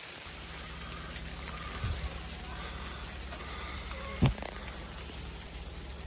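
Steady hiss of rain and sleet falling on and around a tent, with a low rumble underneath and a single sharp knock about four seconds in.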